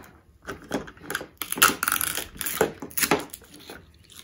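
Foil wrapper of a small toy blind packet crinkling and tearing as it is peeled open by hand, with light clicks of the hard plastic capsule, in an irregular run of quick crackles.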